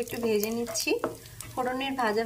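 Whole spices (cinnamon, cloves and cardamom) sizzling in hot oil in a non-stick kadai as a wooden spatula stirs them. The crackle is plainest in a short gap about a second in.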